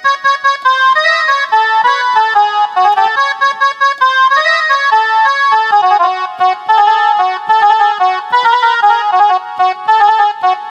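Casio SA-41 mini keyboard played with one hand: a melody of quick single notes, one after another with hardly a gap.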